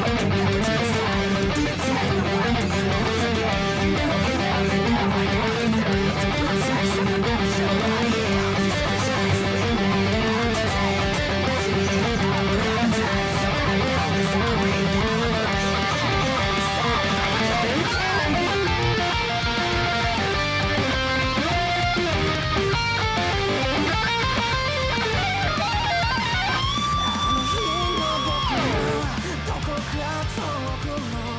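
Fender Player Series Stratocaster, a three-single-coil electric guitar, played through an amplifier: a continuous run of quickly changing notes, ending in a few long held notes that slide down in pitch near the end.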